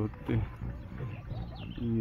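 A man's voice in short fragments at the start and the end, with low outdoor background noise in the pause between.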